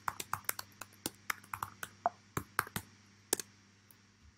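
Typing on a computer keyboard: a run of irregular key clicks for about three and a half seconds, with one louder keystroke near the end, then it stops.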